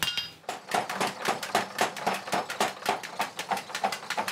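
Blacksmith's hand hammer striking red-hot iron on an anvil: a fast, even run of ringing metallic strikes, several a second, starting about half a second in.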